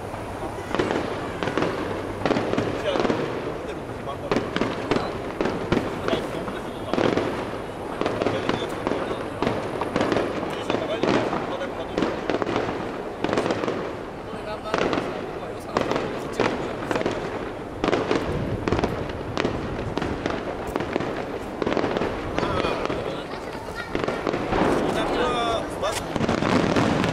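Aerial firework shells bursting one after another, a continuous run of overlapping bangs and crackle, with voices talking underneath.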